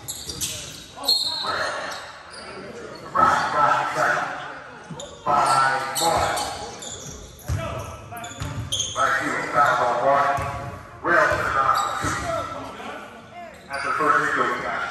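A basketball bouncing on a hardwood gym floor, with sharp knocks at irregular intervals, under indistinct voices and calls that echo through the large gymnasium.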